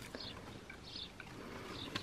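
Faint chewing of a hot fried potato chip, a few soft mouth sounds and small clicks.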